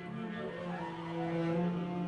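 String ensemble of three violins, viola, cello and double bass playing slow, sustained bowed notes over a held low note. It grows slightly louder near the end.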